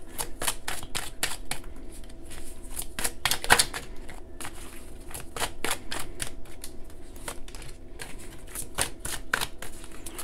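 A deck of oracle cards being shuffled by hand: a quick, irregular run of light card clicks and slaps, several a second. Near the end a card is drawn and laid on the table.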